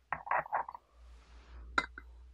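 Porcelain teacup being handled: three quick rasping scrapes, then a sharp clink as the cup is set down on its coaster near the end.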